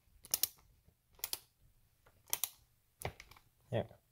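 Ratcheting screwdriver clicking in short bursts about once a second as a screw is turned in by hand.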